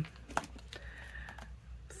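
A few light clicks and taps of plastic art markers being handled and picked up from a table.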